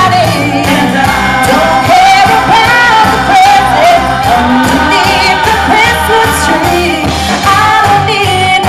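Live pop singing through microphones, a lead voice with backing singers, over loud amplified backing music with a steady beat.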